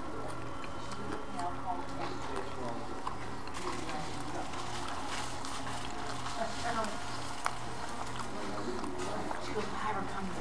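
Restaurant background: indistinct chatter of other diners over a low hum that pulses evenly about twice a second. A single sharp click sounds about seven and a half seconds in.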